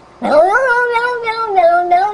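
A domestic cat giving one long, loud yowl that starts about a quarter second in, rises at first, then holds with a pulsing waver and sinks slightly in pitch.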